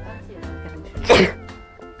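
A woman sneezes once, sharply, about a second in, over background music; the sneeze comes from her allergy to cat hair.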